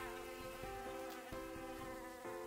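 Quiet buzzing of a flying bee, a steady drone that shifts pitch a few times as it flies.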